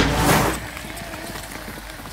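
A short whoosh transition effect as the background music ends, then an e-mountain bike rolling along a dirt forest trail, its tyres giving faint crackling ticks over the ground.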